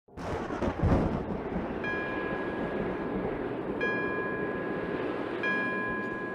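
A low rumble of thunder at the start, then a bell struck three times about two seconds apart, each strike ringing on and fading, over a steady hiss of background noise.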